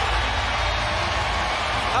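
Arena crowd cheering a made three-pointer, a steady wash of noise with no break.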